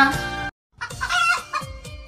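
A short run of pitched, call-like notes over faint music, starting after a momentary cut to silence about half a second in.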